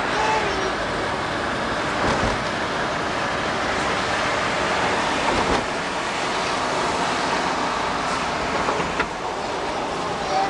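Steady road noise of a moving car heard from inside the cabin, tyres and engine running, with other traffic around it.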